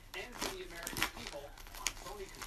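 Wrapping paper crinkling and tearing as a dog paws and bites at a wrapped present, heard as a few short, sharp crackles.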